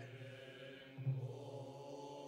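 Buddhist sutra chanting by a group of priests in unison: a low, steady drone of held pitches with a rhythmic swell about once a second.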